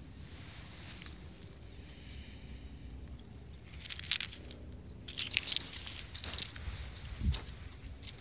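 Faint rustling and crunching of movement through dry straw stubble and tilled dirt, with a couple of brief louder rustles near the middle, over a low steady rumble.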